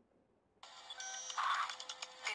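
Iron Man Mark L motorised helmet playing its electronic start-up sound effect through its built-in speaker as the system powers back on after a touch on the side sensor, starting about half a second in after silence.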